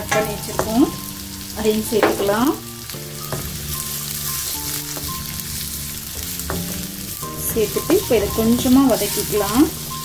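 Onions and green capsicum sizzling in a hot wok while a wooden spatula stirs and scrapes them. Louder bursts of wavering, pitched tones rise over the sizzle about two seconds in and again near the end.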